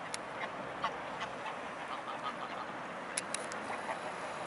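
A flock of waterfowl calling: scattered short quacks and honks from ducks and greylag geese, over a steady background rush. A quick run of sharp high ticks comes about three seconds in.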